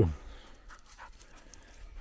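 A small dog panting faintly.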